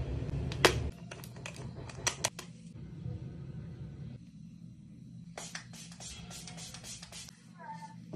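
A quick series of sharp clicks and taps from makeup containers, caps and applicators being handled, bunched in two runs about a second in and again after five seconds. A low background sound cuts out about a second in.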